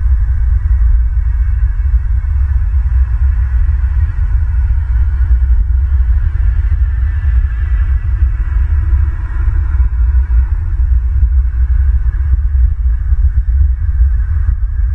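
Loud, steady low rumble with a fainter, even hiss above it, picked up by the nest camera's outdoor microphone.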